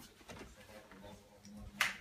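A single sharp click near the end, over quiet room tone.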